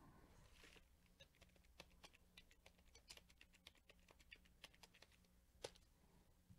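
Faint, irregular clicking of typing on a computer keyboard, with one louder click near the end.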